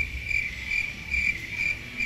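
Cricket-chirp sound effect: a steady series of short, high chirps, about four a second, used in editing to mark an awkward silence after a joke.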